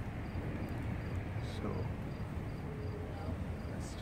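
Outdoor background noise: a steady low rumble with faint, evenly repeating high chirps about three times a second, and faint voices in the distance.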